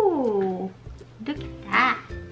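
Two short wordless vocal calls over background music: the first glides up and then down in pitch, and a shorter second one comes near the end.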